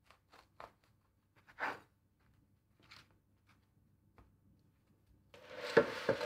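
Serrated knife sawing through a crusty baguette: a few short, faint crunches of the crust breaking, the loudest about one and a half seconds in. Near the end a louder rustling and handling noise rises.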